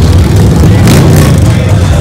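Many cruiser motorcycle engines running loudly and steadily as a slow line of bikes rolls past in street traffic.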